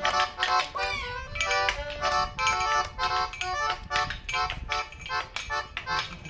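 Small accordion playing short, detached chords in a quick, bouncy rhythm, about three or four a second. A brief sliding squeak rides over it about a second in.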